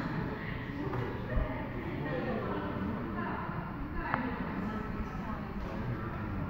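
Indistinct voices of people talking in the background over a steady low rumble, with a brief thump about a second and a half in.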